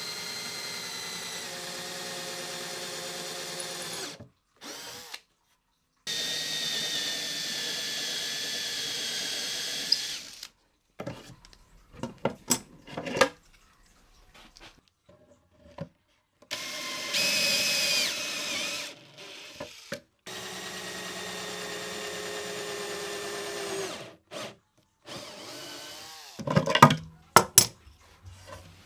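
Cordless drill boring holes through a drilling jig clamped to a plywood drawer box side, in four steady runs of a few seconds each. Between runs, and near the end, come sharp clicks and knocks of the jig and clamps being handled.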